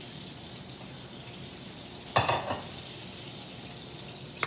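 A steady sizzling hiss of hot oil, with one short sharp clatter about two seconds in.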